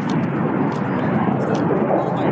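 Loud, steady roar of a jet aircraft engine.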